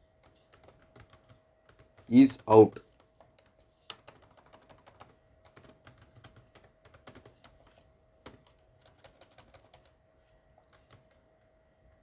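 Typing on a computer keyboard: irregular bursts of keystrokes as code is entered, with a faint steady hum underneath.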